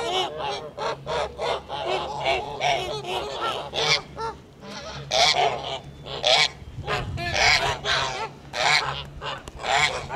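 A flock of Kholmogory geese honking, many calls overlapping with hardly a pause.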